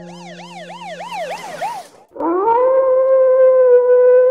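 An eerie warbling tone, wavering up and down about four to five times a second over a rising hiss, that cuts off just before halfway. Then a wolf-like howl rises and holds one long steady note.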